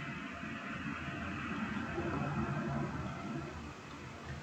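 Faint, steady low rumble of background noise that swells slightly in the middle.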